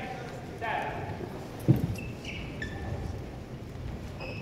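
Court shoes squeaking briefly on a badminton court mat between rallies, with one sharp knock a little before halfway that is the loudest sound.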